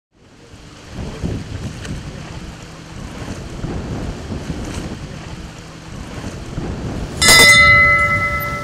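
Sea waves with wind, the noise swelling and ebbing every couple of seconds. Near the end a sudden loud strike sets off a steady ringing tone that carries on.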